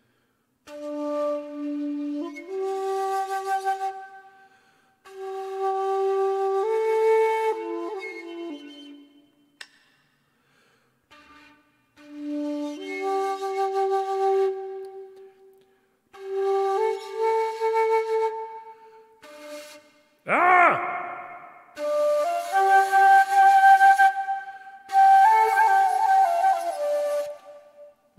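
Bamboo shakuhachi, the Japanese end-blown flute, played by a beginner. It plays several short phrases of breathy held notes that step up and down, with brief pauses between them.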